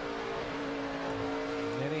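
NASCAR Cup Series stock car V8 engines at racing speed, holding a steady pitch, with one engine rising in pitch as it accelerates near the end.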